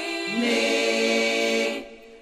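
Women's a cappella vocal group singing, holding one sustained chord that fades out near the end.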